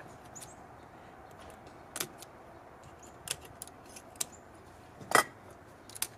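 A few light clicks and taps of glass oil lamps and small tools being handled and set down on a wooden table. The taps come about two, three and four seconds in, with the loudest a little after five seconds, over a faint steady background.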